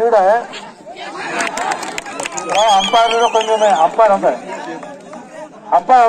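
Several men shouting loudly and excitedly over one another, reacting to a kabaddi tackle, with one high, drawn-out yell in the middle; the shouting dies down near the end.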